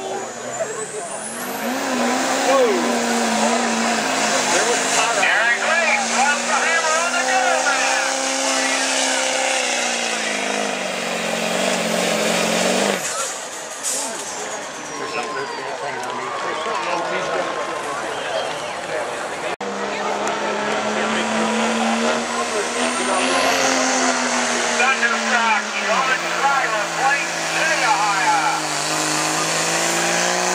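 Diesel pickup truck engines at full throttle pulling a weight-transfer sled, in two runs. In each run the engine holds a steady pitch, then sags lower as the sled's load builds, with a high whine rising sharply as each pull begins.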